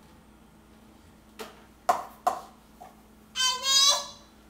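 A few short knocks, then a toddler's high-pitched yell of just under a second near the end.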